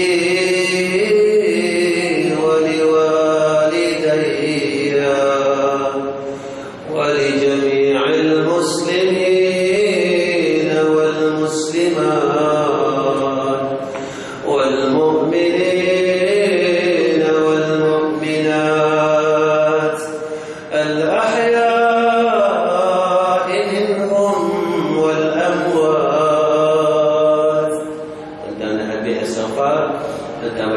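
A man's voice chanting a devotional recitation in long, drawn-out melodic phrases, with brief pauses for breath between them.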